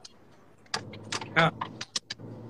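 A brief dropout to silence, then a run of light, irregular clicks and handling noises with a short 'aa' from a man's voice.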